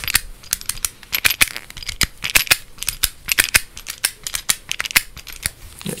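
Close-up handling of a small object held up to the microphone: an irregular run of quick clicks and taps, several a second, with light rustling.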